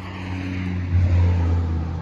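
A motor vehicle going by on the road: a low, steady engine hum with tyre noise, loudest about a second in.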